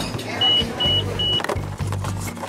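Vending machine giving three short high beeps, then its dispensing motor running with a steady low hum.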